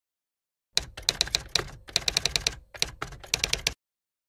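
Typing sound effect: a fast run of sharp keystroke clacks in a few quick bursts with short pauses, lasting about three seconds and cutting off abruptly.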